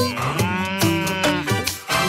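Cartoon cow moo sound effect, one long call that rises and falls, over upbeat children's music with a steady beat.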